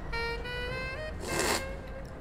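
A short, hissy slurp of coffee from a cupping spoon, about a second and a half in: the taster aspirating the brew across the palate. Background music with a held note runs under it.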